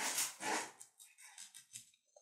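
Flat paintbrush stippling thick decoration mousse through a stencil onto paper: a quick run of soft, scratchy dabs in the first moment, then fainter dabs.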